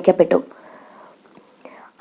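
A woman narrating in Malayalam finishes a phrase about half a second in. A pause follows, holding only a faint breath before she goes on.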